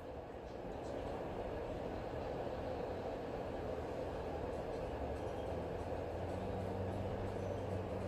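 Steady background noise with no clear events, and a faint low hum coming in after about six seconds.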